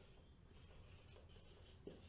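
Faint strokes and squeaks of a marker pen writing on a whiteboard, with a light tap near the end.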